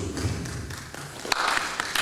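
A pause in a man's speech, filled by the hall's room tone with a few sharp taps or clicks in the second half.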